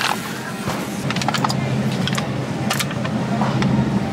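Plastic yogurt tubs handled and set down: a scattered series of light knocks and clicks over a steady low hum.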